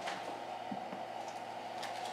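Quiet room tone with a steady low hum and a few faint, short ticks from a Bible's pages being handled and leafed through on a lectern.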